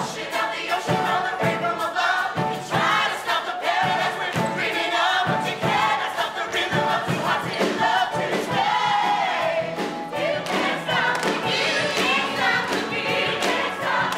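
A group of voices singing an up-tempo Broadway show tune over accompaniment with a steady beat.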